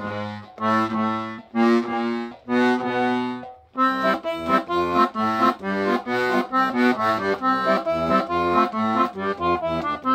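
Sonola SS5 piano accordion's left-hand bass side being played, bass and chord buttons sounding on its handmade bass reeds. A few slower, held notes open the passage, then about four seconds in it breaks into a quicker run of short notes.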